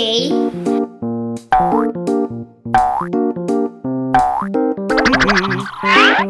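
Bouncy children's background music on keyboard-like synth notes, with cartoon 'boing' sound effects that swoop down steeply in pitch, three of them in the middle.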